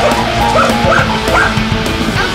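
A dog pawing at the keys of an upright piano, sounding jumbled notes, while it whines and yips along. Three short cries rise and fall in pitch, one after another, in the middle.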